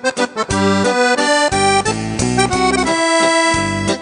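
Piano accordion playing a quick melody over pulsing bass notes, with one longer held note about three seconds in.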